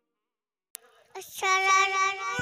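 Silence broken by a single click, then a toddler girl's voice starts singing a naat into a microphone, holding one long high note from about a second in.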